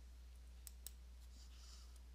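Two faint computer mouse clicks in quick succession, about a second in, over a steady low hum.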